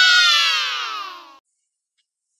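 A cat's long meow: one drawn-out call that rises briefly, then slides down in pitch and stops about a second and a half in.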